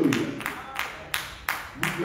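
Hand clapping in a steady rhythm, about three sharp claps a second.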